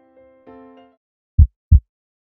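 Soft electric-piano chime notes fade out in the first second, then a heartbeat sound effect: one loud, deep double thump (lub-dub) about a second and a half in.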